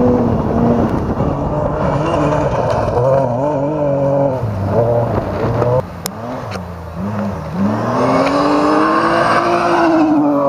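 Rally car engine at full effort on a gravel stage, its note climbing and dropping again and again as the driver works through the gears. The sound falls quieter for a moment about six seconds in, then rises in one long climbing note near the end.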